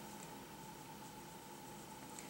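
Very quiet room tone: a faint steady hiss with a faint thin hum, and no distinct sounds.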